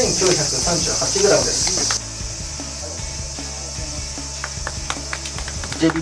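A steady, high-pitched chorus of insects, loud for the first two seconds and then dropping to a fainter level. Indistinct voices are heard early on, and scattered sharp clicks come later.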